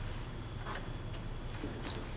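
Room tone with a steady low hum and three faint, scattered clicks.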